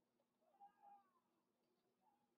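Near silence, with one faint, brief pitched cry about half a second in that rises and falls.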